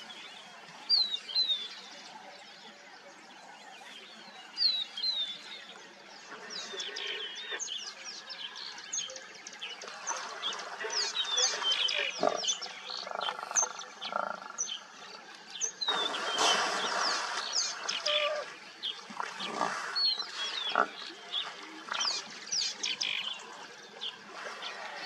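Birds chirp throughout, with short falling high calls. From about ten seconds in, hippos fighting in the water give rough grunting calls and splash heavily, with the loudest churning about two thirds of the way through.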